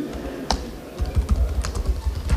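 Typing on a laptop keyboard: irregular, scattered key clicks with low bumps underneath.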